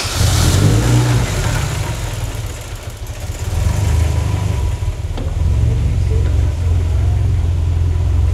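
Turbocharged Škoda 1.3-litre pushrod four-cylinder engine running in the bay, a deep steady rumble that eases off between about a second and a half and three seconds in, then comes back up and stays louder.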